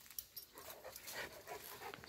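Faint panting and movement of a large dog, with soft scattered clicks.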